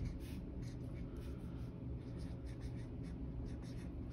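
Dry-erase marker writing on a whiteboard: a faint run of short marker strokes as a word is written out letter by letter.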